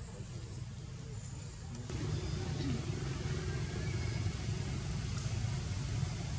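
A steady low rumble of outdoor background noise that gets louder about two seconds in.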